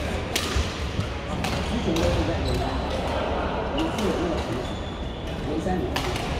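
Badminton rally: sharp racket strikes on the shuttlecock about once a second, with brief shoe squeaks on the wooden court floor and voices talking in the background.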